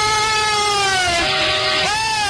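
Arena goal celebration music over the PA after a goal: one long held note that drops lower about a second and a quarter in and swings back up near the end, with the crowd cheering underneath.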